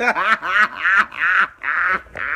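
A man laughing hard: a run of short, high-pitched cackling bursts, each sliding down in pitch.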